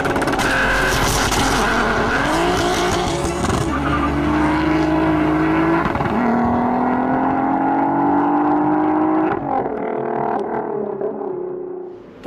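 Turbocharged VR6 engine of a Golf IV R32 accelerating hard: rough and noisy in the first few seconds, then the revs climb through a gear, drop at a shift about six seconds in, and climb again before easing off near the end.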